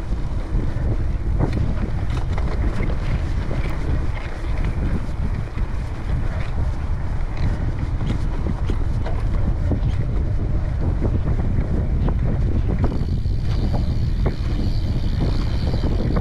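Wind buffeting the action camera's microphone while riding a Cannondale Topstone gravel bike along a dirt trail at about 20 km/h, with tyre rumble and frequent small clicks and rattles from the bike over the uneven ground. A higher steady hiss joins about thirteen seconds in.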